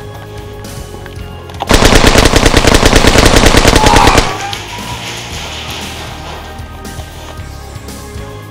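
An airsoft electric rifle firing one rapid full-auto burst lasting about two and a half seconds, starting a little under two seconds in. Background music runs quietly under it.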